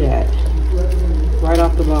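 A person's voice in drawn-out, held tones, with few clear words, over a steady low hum.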